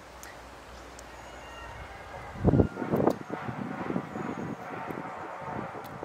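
Wind rumbling on the microphone over distant truck traffic, with a loud thump about two and a half seconds in, then a run of short irregular sounds.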